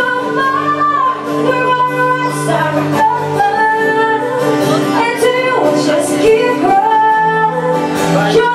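Live acoustic music: a singer's voice carrying long held notes that slide between pitches, accompanied by an acoustic guitar.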